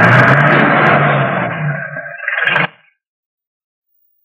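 Van engine running as the van drives up, a loud noisy rush over a low rumble that stops abruptly about two and a half seconds in.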